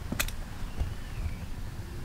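Low background rumble with a single sharp click just after the start.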